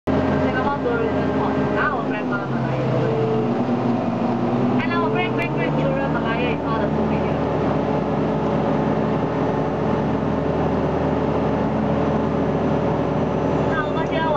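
Engine of a DUKW amphibious tour vehicle running steadily while afloat. About two seconds in, its pitch dips, then climbs back by about six seconds. Short snatches of voices come over it.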